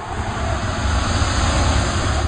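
Rocket engine sound effect for a spaceship landing: a loud rushing roar over a deep rumble that builds over the first half second and then holds steady.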